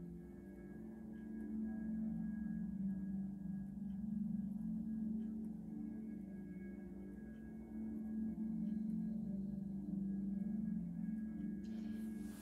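Soft ambient background music: a steady low drone with faint held higher tones above it and no beat.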